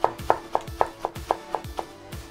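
Kitchen knife chopping lettuce on a wooden cutting board in quick, even strokes, about four a second, over quiet background music.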